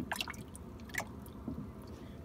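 Water splashing and dripping in a boat's livewell as the northern pike held in it move about: a few short, separate splashes and drips, one near the start and others about a second in.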